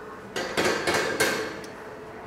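Metal clanking of a gym shoulder-press machine in use: a quick run of several metallic knocks with a short ring after each, starting about a third of a second in.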